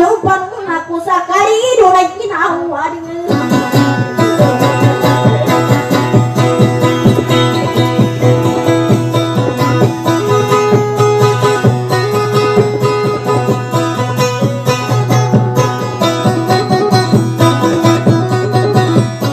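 Acoustic guitar played in dayunday style. A voice sings over it for the first three seconds, then the guitar goes on alone in a fast, even strumming rhythm.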